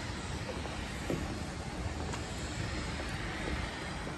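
Steady airport background noise: a continuous low rumble and hiss from distant aircraft and airport machinery, with a few faint footsteps.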